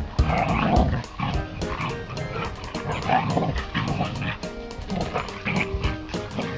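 Background music with a steady beat, over which a husky makes a few short rough vocal sounds, about half a second in and again around three seconds in.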